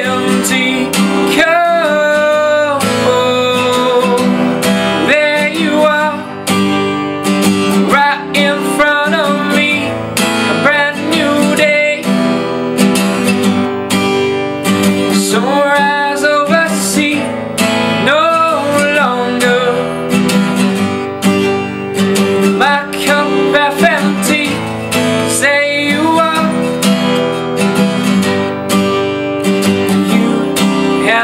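Acoustic guitar strummed steadily through an instrumental stretch of a song, with a wordless voice gliding in over it a few times.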